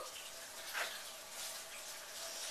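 Quiet kitchen room tone with a faint steady hum. A single soft, brief hiss-like noise comes a little before the middle.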